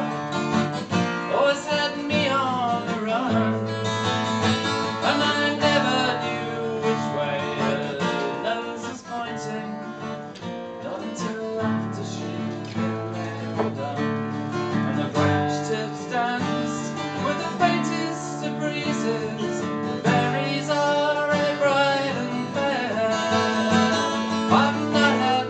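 An acoustic guitar played live by a solo folk performer, its chords ringing on with no break.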